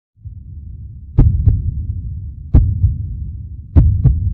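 Heartbeat-style sound effect: deep paired thumps about every 1.3 seconds over a low rumble, three beats in all.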